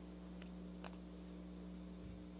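Quiet room tone with a faint steady low hum, broken by two small clicks, the second and sharper one just under a second in.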